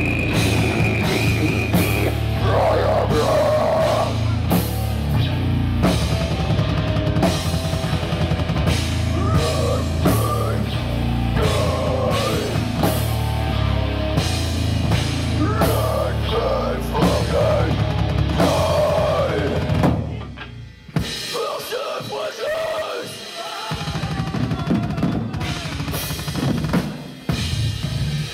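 Live heavy metal band playing loudly, with a drum kit and heavy bass. The full band breaks off suddenly about two-thirds of the way through, a sparser passage follows, and the heavy low end comes back in a few seconds later.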